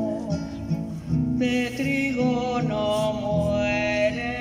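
Live singing with acoustic guitar accompaniment, the voice holding long sustained notes in the second half.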